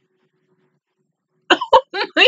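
A woman bursting into laughter about one and a half seconds in, a run of short choppy laughs with the exclamation "God!", after a near-silent stretch.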